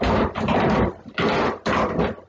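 Three loud bursts of rustling and knocking from things being handled close by, the fumbling after a dropped plastic container lid.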